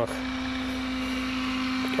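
Vehicle engine running steadily, a low even hum.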